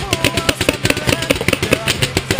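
Paintball marker, a BT TM-7, firing fast full-auto strings: a rapid, uneven rattle of shots, about eight to ten a second.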